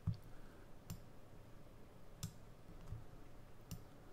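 A few sharp computer mouse clicks, about four, spaced irregularly a second or so apart, at a low level.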